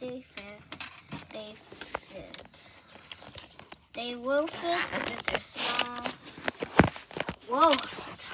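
Small toys being handled and rummaged at close range: scattered clicks, taps and rustles, with one louder knock near the end.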